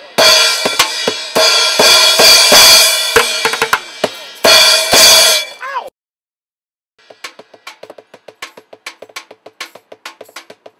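Drums and crash cymbals played hard on a makeshift bucket kit of plastic buckets, bins and tubs, cymbals ringing over the beat, until the sound cuts off suddenly about six seconds in. After a second of silence, a quieter, fast pattern of light clicking percussion starts.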